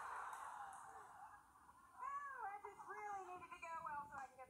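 Studio audience laughter after a punchline, fading out over the first second and a half. It is followed by a woman's voice making a few drawn-out sounds that swoop up and down in pitch.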